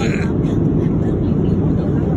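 Steady low rumble of an airliner's cabin noise, the engines and airflow heard from inside the passenger cabin.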